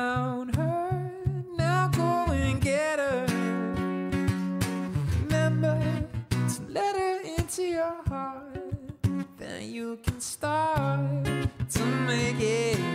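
Acoustic guitar strummed in a steady chord rhythm while a man sings a melody over it.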